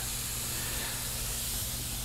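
Steady, even hiss of escaping gas, with a faint low hum under it.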